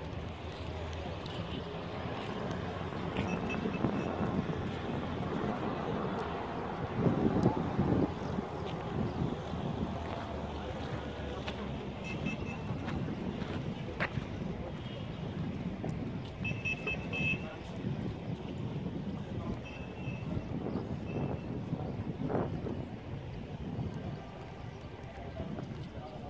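Outdoor ambience of wind rumbling on the microphone over a faint murmur of tourists' voices, louder for a moment about seven seconds in, with a few brief high chirps scattered through.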